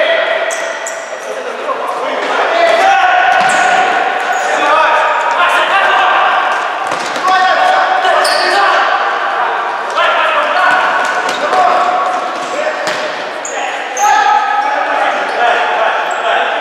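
Futsal being played in an echoing sports hall: players' shouts ring out, with the thuds of the ball being kicked and bouncing on the court and short high squeaks scattered through.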